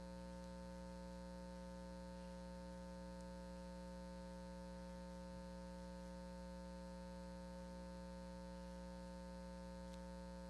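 Faint, unchanging electrical mains hum made of several steady tones.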